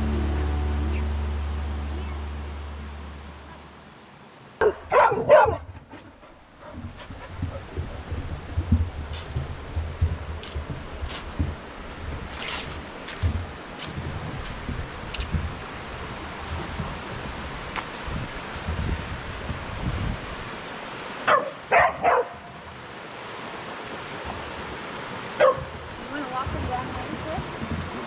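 A dog barking in short bursts: a quick cluster of barks about five seconds in, two more later and one near the end, over the steady rush of a rocky mountain creek.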